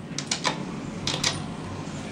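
A quick run of sharp clicks and taps in two clusters about a second apart, over a low steady hum inside an elevator car.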